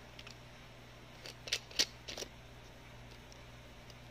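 A handful of short, sharp clicks and taps, two faint ones at the start and a quick cluster between about one and two and a quarter seconds in, the loudest just under two seconds in, over a steady low hum.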